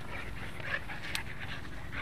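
Dogs panting and scuffling as they wrestle in play, with one sharp click a little after a second in.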